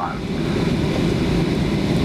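Steady rumble heard inside the cabin of a Boeing 737-800 jet airliner as it rolls along the runway after landing, its engines and wheels running, growing slightly louder.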